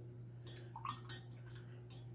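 Watercolour brush being rinsed in a glass jar of water: faint swishing with a few light ticks of the brush against the glass in the second half.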